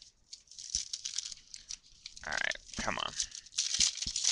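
Trading cards being handled and a plastic card-pack wrapper crinkling, with a louder rip near the end as the pack is torn open.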